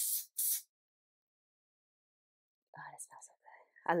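Two short hisses of an aerosol room spray can being sprayed into the air.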